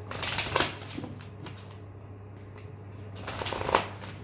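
A deck of tarot cards being shuffled by hand, in two short bursts: one just after the start and one near the end. Each burst ends in a sharper snap of the cards.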